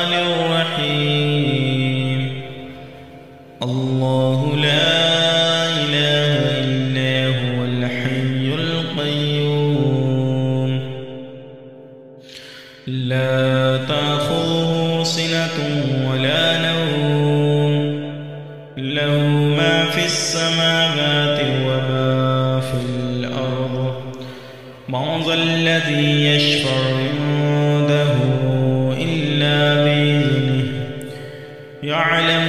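A male reciter chanting Quranic Arabic in a melodic tajweed style: long, drawn-out sung phrases broken by four short pauses for breath.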